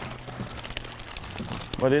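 Faint rustling and a few light knocks as catfish are handled inside a wire hoop net, over a steady low hum.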